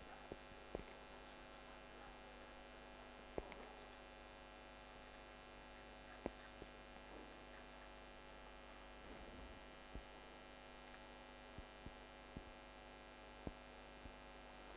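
Near silence with a steady electrical mains hum, and a few faint, scattered ticks of a felt-tip marker touching paper as a zigzag line is drawn.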